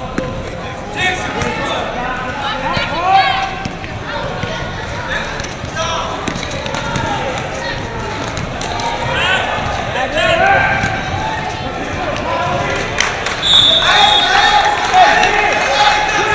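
Basketball bouncing on a gym floor during play, with sneakers squeaking in short chirps as players run and cut. Voices of players and spectators call out over the play.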